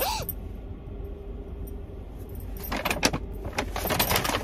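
Metal bangle bracelets jingling and clinking against each other as the arm moves, in a few quick clusters of light clinks in the second half.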